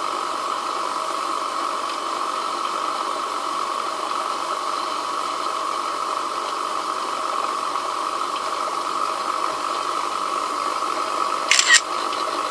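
Small two-stage 1930s steam turbine running steadily on steam at about 50 psi: a constant high whine over a hiss of steam. Two sharp clicks near the end.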